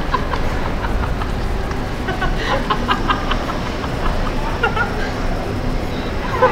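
Busy pedestrian street: a steady low traffic rumble with passers-by. A run of quick clicks and clatters about two seconds in, and brief snatches of voices.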